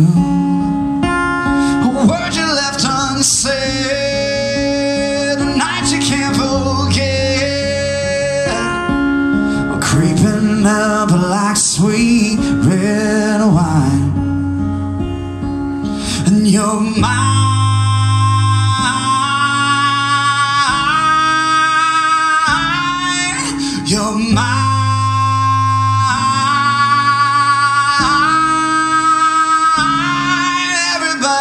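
Live acoustic guitar strummed with a man singing over it through a venue PA. In the second half the song settles into long held notes.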